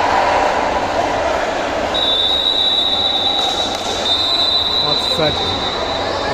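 A steady, high-pitched whistle held for about two seconds, broken briefly and then held again for about two more, over loud crowd noise in a sports hall. Voices shout near the end.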